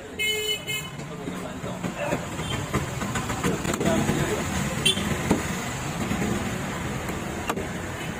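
A vehicle horn toots briefly about half a second in, over steady street-traffic noise and background voices. A few sharp knocks of a knife on a wooden chopping block come later.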